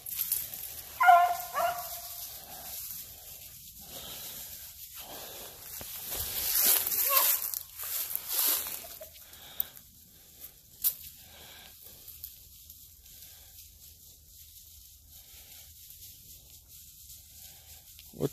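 A hound gives one short bay about a second in. Dry leaves and brush rustle and crackle, loudest around six to eight seconds in, with a sharp twig snap near eleven seconds.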